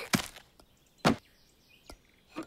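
Cartoon sound effects: a short knock just after the start, a louder knock about a second in, and a faint click near the end.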